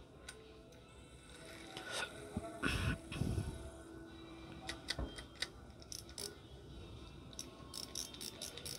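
Ryobi Longmaster 1000 spinning reel being handled: scattered light mechanical clicks of its metal handle and parts, with a short rustling scrape about three seconds in and a run of clicks around the middle.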